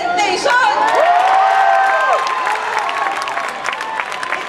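A crowd of students cheering and whooping in long, held shouts, with some clapping. The shouts fade after about two seconds.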